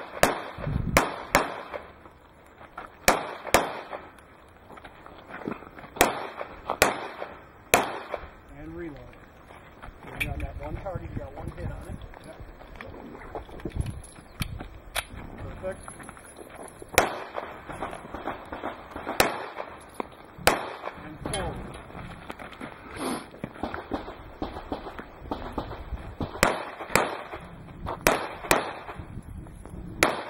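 Handgun shots fired singly and in quick pairs, about twenty in all, with pauses of a few seconds between strings as the shooter moves from target to target.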